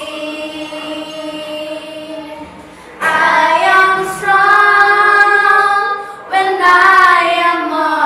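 Three children singing together in long held notes. The singing is soft for the first few seconds, grows louder about three seconds in, and breaks off briefly just after six seconds before going on.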